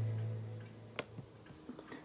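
The last low note of a piece of music fades away. A sharp click follows about a second in, then a few faint ticks.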